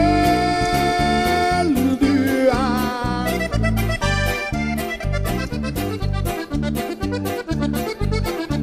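Norteño band playing an instrumental passage live, led by a button accordion: it holds one long note, then plays a wavering, ornamented phrase, over a steady rhythmic backing with bass.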